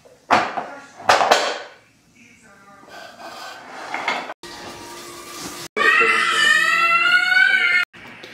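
Wooden toy pieces knocking and clattering twice in the first second and a half as a baby handles a wooden shape-sorter box. Near the end, after a cut, a loud, high, wavering pitched sound lasts about two seconds.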